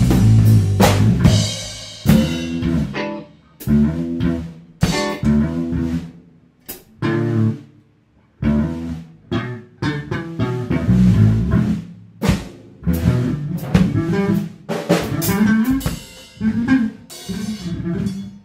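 Drum kit and electric bass played live together in stop-start phrases: bursts of bass notes and drum hits, broken by short, much quieter gaps.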